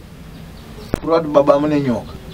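A faint steady low buzz, then a sharp click about a second in, followed by a man's voice.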